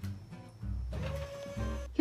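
Electric motor of a power recliner whirring as the chair tilts back, over background music.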